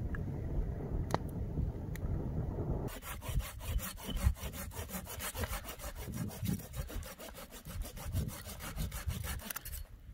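A campfire crackling over a low rumble, with a couple of sharp pops. Then, about three seconds in, a knife scraping and shaving a wooden stick in quick, even strokes, about five or six a second, stopping just before the end.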